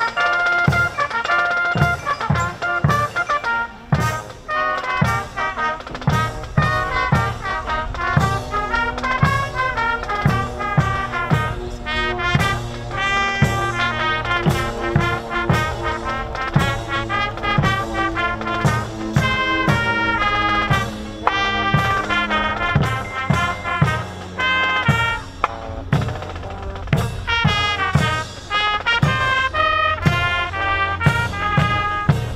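Military brass band playing a march: trumpets and trombones carry the tune over a steady drum beat of about two strokes a second, marching tempo for troops marching on line.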